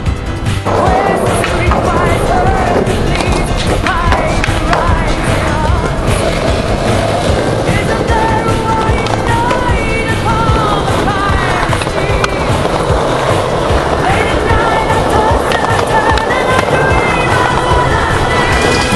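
A music track plays throughout, over skateboard wheels rolling on concrete and the occasional clack of a board popping and landing.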